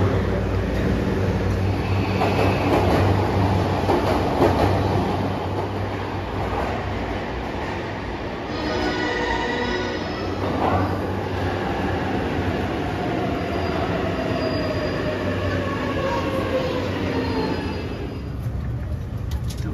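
Electric commuter train running into an underground station platform: a steady rumble of wheels on the rails, a brief high squeal about halfway through, then a motor whine falling slowly in pitch as the train brakes.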